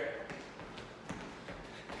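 Sneakers stepping on a gym floor, a few soft taps as the feet step out and back in a low-impact wide-out.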